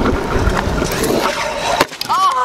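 Stunt scooter wheels rolling on asphalt with a steady rushing noise, then one sharp clack near the end as the scooter hits the ground in a bailed trick attempt.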